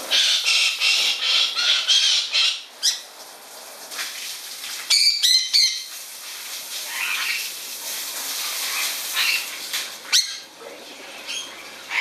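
A wet galah flapping its wings hard while hanging in its aviary, giving repeated rushing flurries of feathers. A short parrot squawk comes about five seconds in.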